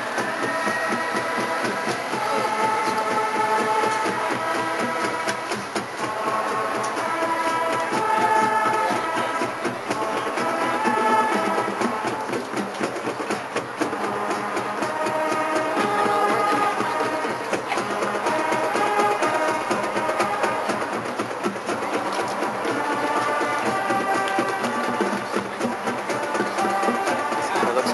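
High school marching band playing: held brass chords that change every second or two over steady drum strikes.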